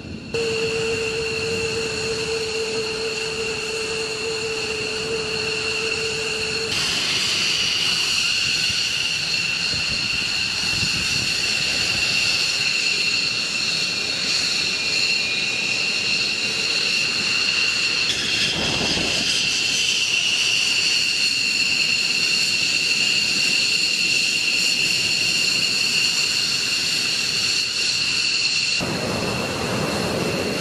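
F-15E Strike Eagle jet engines running on the ground at idle: a steady high-pitched whine over a rushing noise. The sound jumps abruptly about seven seconds in and again near the end.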